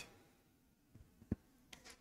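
Near silence: room tone in a pause in speech, with one faint short click about a second in.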